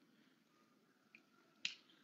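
Near silence, broken by a faint tick about a second in and a short, sharp click a little later.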